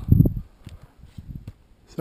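Skis and poles of a skier skinning uphill on snow: faint scuffs and taps, with a brief low thump just after the start.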